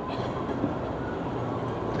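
Steady rumble and hiss of passing vehicle traffic.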